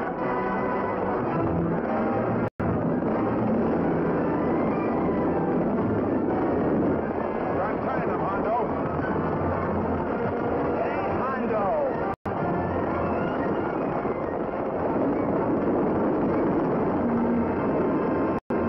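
Orchestral film score over the action noise of horses galloping and rearing, with voices in the mix. The sound cuts out for an instant twice, about two and a half seconds in and again about twelve seconds in.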